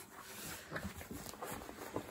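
Faint rustling of a canvas bag being handled and unfolded, with a few soft irregular taps.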